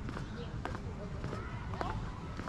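Distant sharp clacks and knocks with faint voices over a steady low background, the noise of what may be a skate park.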